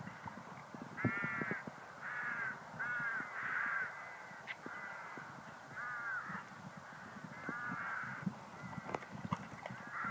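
Crows cawing: about seven harsh caws, most of them in the first four seconds and a couple more near the sixth and eighth second, with soft low thuds underneath.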